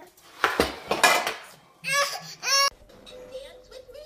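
A toddler clattering a metal cooking pot and its lids on a hard floor, a run of loud knocks and rattles, followed by two short high cries from a small child about two seconds in. A faint steady tone follows near the end.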